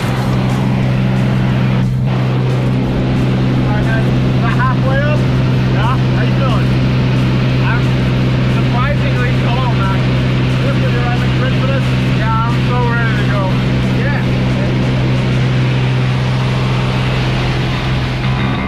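Single-engine light aircraft's piston engine and propeller droning steadily, heard from inside the cabin.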